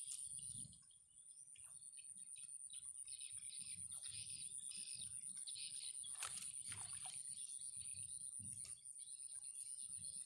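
Faint open-air ambience: birds chirping now and then over a steady high-pitched whine, with a few faint clicks.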